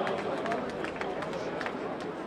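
Outdoor street background with indistinct voices of people, and a few faint clicks and knocks scattered through it.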